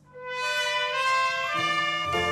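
A solo trumpet comes in just after a brief hush and plays a melodic phrase of held notes. The note changes about one and a half seconds in.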